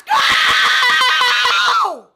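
A woman's long, high-pitched scream, held for nearly two seconds with a wavering pitch that drops off at the end.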